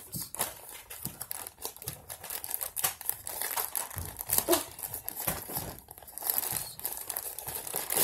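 Clear plastic packaging bag crinkling irregularly as hands handle it and work it open around a soft foam squishy toy.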